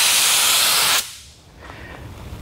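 SATA Jet 100 B RP gravity-feed spray gun spraying water in a test pattern, with a steady loud hiss of atomising air. It cuts off suddenly about a second in.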